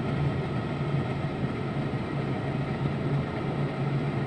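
Steady road and engine noise heard inside a moving car's cabin, a low even hum under a wide hiss.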